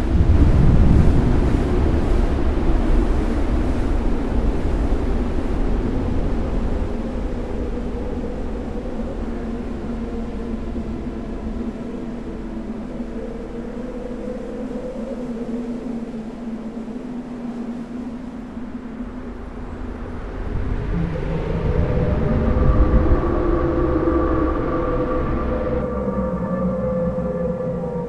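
Dark ambient drone music: a deep rumble under slowly shifting held tones. It thins out midway and swells again about twenty seconds in, with higher sustained notes entering.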